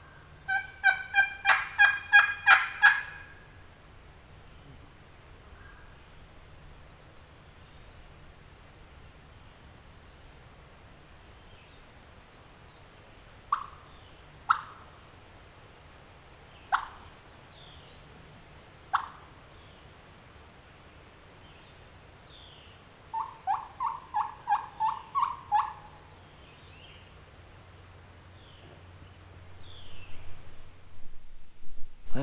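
Hen turkey yelps and clucks made on a hunter's turkey call: a loud run of about eight yelps at the start, four single clucks a second or two apart midway, and a softer run of about nine yelps near the end.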